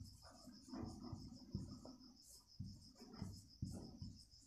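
Marker pen writing on a whiteboard in short, irregular strokes and scrapes. Behind it, an insect chirps in a fast, even, high-pitched pulse.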